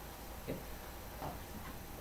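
Quiet room tone with faint ticking and a single soft spoken word about half a second in.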